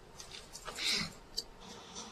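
A quiet room with a short, soft breathy rustle about a second in and a faint click shortly after.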